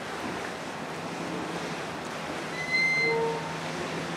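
Rough river water splashing around a passing harbour ferry's bow, with wind on the microphone and a steady low engine hum. A short high-pitched tone sounds about three seconds in.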